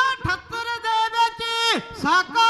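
A single voice singing a Punjabi composition in praise of a Sikh martyr, holding wavering notes, with a brief break just after the start and a long downward slide near the end.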